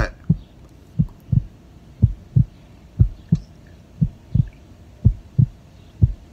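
Heartbeat sound effect: a steady lub-dub double thump repeating about once a second.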